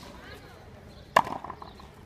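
A frontenis ball being struck in a rally: a faint crack at the start, then a loud sharp crack a little over a second in with a short ring, from the hard ball meeting a racquet or the front wall.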